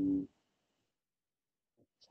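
A short pitched tone held at one steady pitch, cutting off suddenly about a quarter of a second in; near silence follows.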